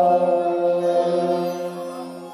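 Devotional music: a mantra chant, with one long note held steadily and fading in the second half.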